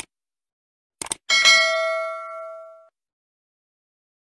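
Sound effect of a subscribe-button animation: short mouse clicks, then a single bright bell ding about a second in that rings out and fades over about a second and a half.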